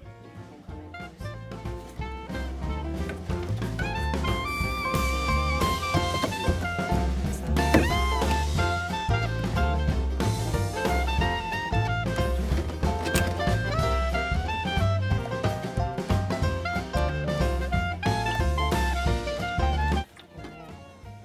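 Background music: an upbeat jazzy instrumental with horns and a drum kit keeping a steady beat.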